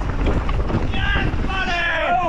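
Enduro mountain bike rattling and rumbling at speed down a rough forest trail, with wind buffeting the helmet-mounted camera's microphone. Spectators shout high-pitched cheers about a second in and again near the end.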